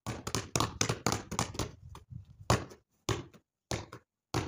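Basketball dribbled on patio tiles: a quick run of bounces in the first two seconds, then a few spaced-out bounces, the loudest about two and a half seconds in.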